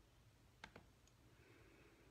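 Near silence in a small room, broken a little over half a second in by two faint quick clicks, with a fainter tick about a second in.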